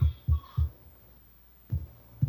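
About half a dozen short, low, dull thumps, irregularly spaced and some in quick pairs, over a faint hum, with a brief faint whistling tone about half a second in.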